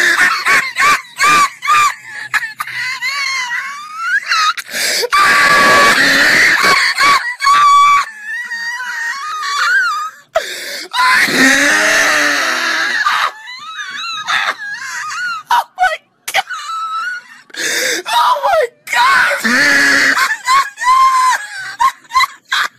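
A voice screaming and shrieking in high-pitched, wavering bursts with short breaks, starting with a laugh.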